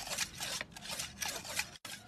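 A hand-held whetstone scraped in quick, repeated back-and-forth strokes over the steel blade of a Chinese kitchen cleaver lying flat on a concrete ledge: stone rasping on steel as a blunt cleaver is sharpened.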